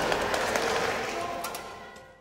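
Background music under a group cheering and clapping, the whole mix fading out over the second half so that only the music's sustained tones are left at the end.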